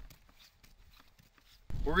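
Faint footsteps on a snow-covered road, a few soft steps. A man's voice starts near the end.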